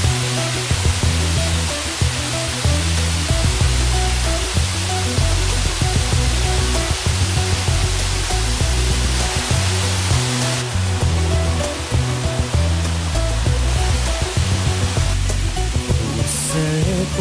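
Rush of the Tupavica waterfall cascading over stepped rock ledges, under background music with a steady bass line. The water's rush is loudest for the first ten seconds or so, then drops back.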